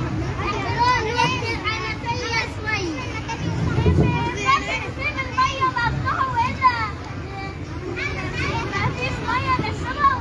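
A group of children's voices calling out together at once, many high-pitched voices overlapping.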